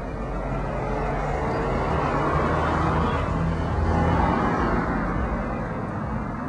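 A car passing on the street, its engine and tyre noise swelling to a peak about four seconds in and then fading.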